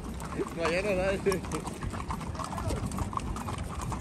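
Hooves of saddle horses clip-clopping at a walk, heard from on horseback, a run of short irregular clicks. A voice briefly cuts in about half a second in.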